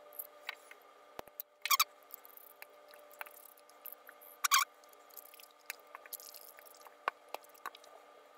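Small clicks, taps and scrapes as a pry tool and a screwdriver work at the plastic and rubber housing of a second-generation Amazon Echo Dot, with two brief squeaks about two and four and a half seconds in.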